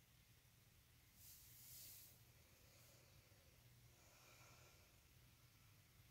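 Near silence: quiet room tone, with a faint brief hiss about a second in.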